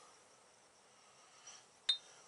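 A single sharp metallic clink with a brief high ring near the end: a steel gudgeon pin knocking against a forged piston as the two are brought together. Otherwise faint room tone.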